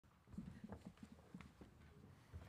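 Very faint knocks and shuffles, several a second, of people settling at a press-conference table: a chair, papers and table-top microphones being handled as someone sits down.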